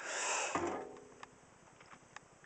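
Handling noise: a short breathy rush of noise, then a few faint clicks as the flex is taken hold of and the hand-held camera moves.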